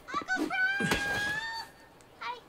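A girl's high-pitched voice shouting one long, drawn-out call that rises and then holds a single high note.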